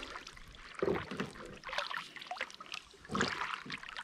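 Double-bladed kayak paddle strokes: the blades dip and splash in the water and drip as they lift, with the splashing swelling about a second in and again just after three seconds.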